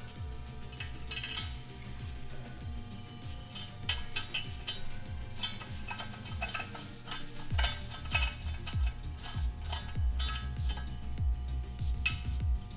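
Light metallic clinks and ticks of a hex key working the mounting screws in a robot arm's base flange, under background music with a steady beat.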